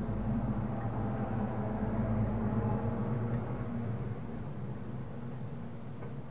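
Steady low hum with a faint even hiss beneath it.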